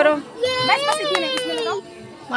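A high voice holds one long drawn-out call, rising a little in pitch and then falling, over surrounding chatter.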